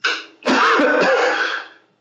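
A man clearing his throat: a brief sound at the start, then a longer one lasting about a second.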